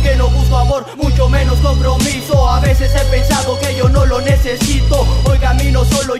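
Hip hop track: rapped Spanish vocals over a beat with a deep, sustained bass line and crisp high percussion. The bass and beat cut out briefly about a second in, then come back.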